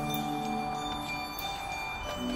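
Marimbas and other mallet keyboards in a percussion front ensemble holding a quiet, sustained chord that slowly fades, with a new chord entering right at the end.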